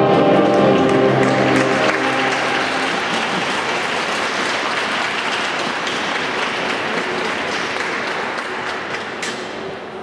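Classical programme music holding its last notes and dying away over the first two or three seconds, while audience applause carries on and thins out near the end.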